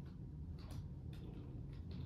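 Computer keyboard keys clicking at an irregular pace as a short word is typed, over a steady low room hum.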